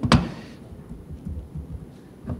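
Quiet room noise through a lectern microphone. A short, sharp noise comes just after the start, and a few soft low thumps follow.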